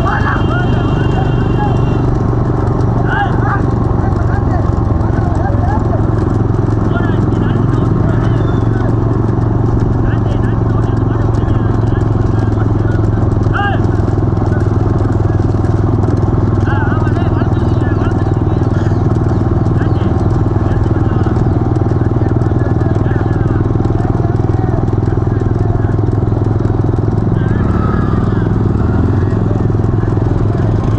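A pack of motorcycles running slowly together in a steady drone, with men shouting and calling over it and a bullock pair's hooves clattering on the asphalt.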